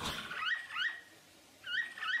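Capybara squeaks: two pairs of short, high squeaks, each sliding up and then holding briefly. One pair comes about half a second in and the other near the end.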